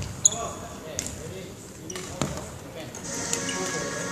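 A few sharp hits of a shuttlecock being struck, ringing briefly in a large hall, the loudest a fraction of a second in, over background voices.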